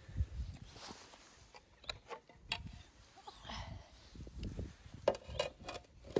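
Quiet handling noise: scattered light clicks and taps with an uneven low rumble as plastic guttering and slate-effect samples are moved about.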